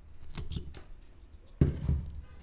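Carving knife slicing into a block of Ficus benjamina wood in short cutting strokes: a couple about half a second in, and a louder, heavier stroke near the end.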